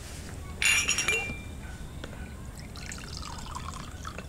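A drinking glass clinks against a hard surface about half a second in, then water is poured into the glass.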